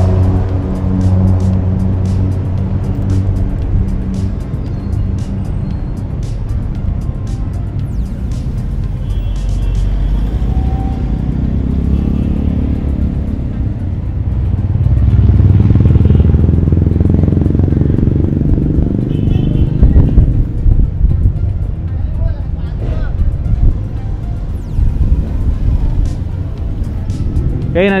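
Busy city street traffic noise: motor vehicles running and passing in a steady low rumble, with people's voices in the background.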